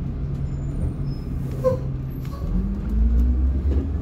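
A 2008 Blue Bird school bus engine heard from inside the cab at low road speed. It holds a steady low note for the first half, then the pitch rises as the bus picks up speed, with the low rumble growing. There is a brief squeak about halfway through.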